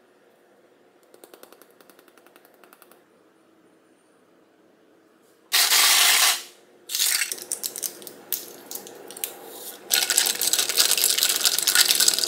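A sesame seed shaker rattles lightly in quick repeated clicks over a plate, then after a pause a loud burst of noise lasting about a second. Irregular crackling and clinking around a glass mug follow, ending in a long, loud stretch of a spoon stirring in the mug.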